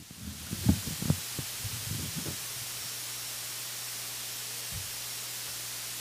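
Handling noise from a handheld microphone being put back into its stand clip: a few short knocks and bumps in the first couple of seconds, the loudest about a second in. After that only the open microphone's steady low electrical hum and hiss remain.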